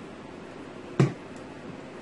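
A single sharp knock about a second in, as the hard plastic blender jar is set down on the counter, over a faint steady hiss.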